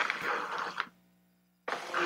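Rustling handling noise close to a microphone, lasting under a second, then cut off abruptly; another short stretch of the same noise starts near the end.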